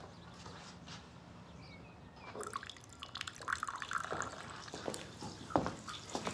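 China and glassware clinking and tapping as breakfast is served, with small liquid sounds. The light clicks and taps begin about two seconds in, after a faint steady room hum.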